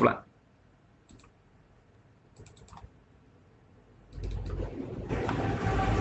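A few faint computer mouse clicks. About four seconds in, a steady rushing hiss with a low hum starts and gets louder a second later.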